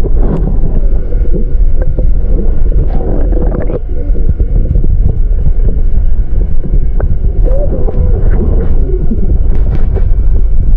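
Water rushing and churning around a submerged action camera, heard as a loud, muffled underwater rumble with scattered small knocks.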